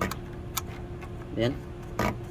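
A few sharp, light clicks of a thin metal pick working against a connector's locking clip as it is pried to release, over a steady low hum.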